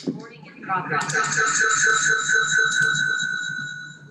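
Audio feedback between two video-call devices in the same room: a loud, steady high-pitched squeal with a fast pulsing underneath, building about a second in and cutting off near the end when a microphone is muted.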